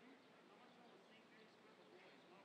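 Near silence: faint outdoor ambience with a distant murmur of voices and faint short high chirps.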